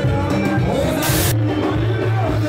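Live Congolese rumba band music playing loudly, with a singing voice over guitar and a steady bass. About a second in there is a short burst of hiss.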